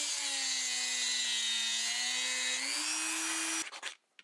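A high-speed rotary tool with a cut-off wheel whines as it cuts a nylon standoff. Its pitch sags as the wheel bites into the nylon and climbs back shortly before the motor sound cuts off near the end.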